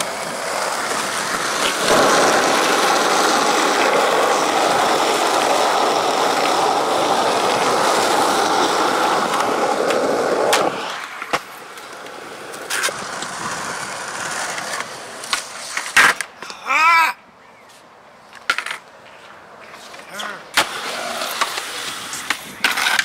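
Skateboard wheels rolling on a concrete skatepark surface, a loud steady rolling noise that cuts off about ten seconds in. After it come a few sharp clacks of the board striking concrete and a brief wavering, pitched sound.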